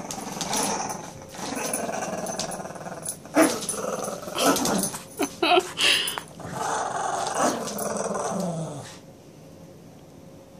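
A pug and a Brittany spaniel growling while they play tug of war over a plush toy. A few short, louder yelps come in the middle, and the growling dies down near the end.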